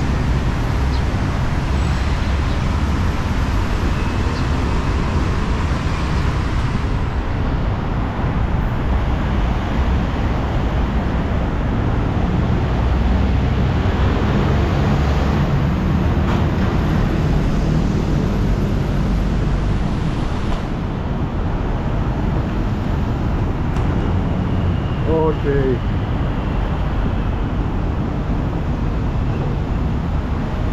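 Steady road traffic from a busy street below, a constant rumble of engines and tyres. Near the end a brief wavering pitched sound rises above it.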